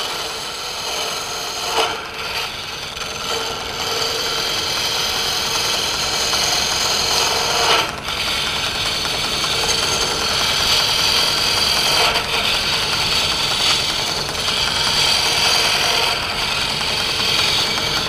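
Wood lathe turning a wooden blank while a hand-held turning chisel shaves it to a round cylinder: a steady scraping hiss of wood being cut, dipping briefly about two and eight seconds in.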